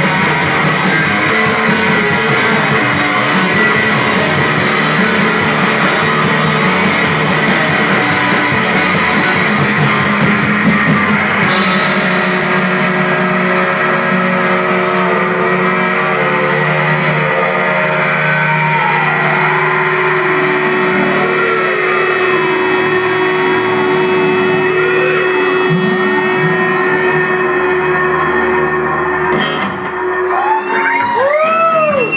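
Live rock band playing loud guitars, bass and drums. About twelve seconds in the crashing high end stops, and the rest is long held guitar notes with swooping pitch glides as the song winds down.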